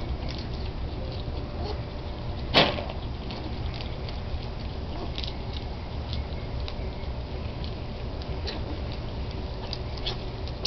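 Young striped skunks eating dry food from a bowl: faint crunching and scattered light clicks of kibble, with one louder click about two and a half seconds in, over a steady low rumble.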